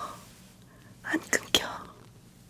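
A woman whispering a few words close to the microphone about a second in, with sharp mouth clicks.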